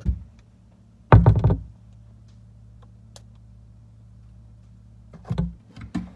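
Dull knocks and thumps: one at the start, a loud cluster about a second in and two more near the end, over a steady low hum.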